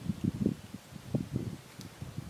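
Soft, irregular low thuds and rustling from body movement, such as clothing and arm gestures near the microphone.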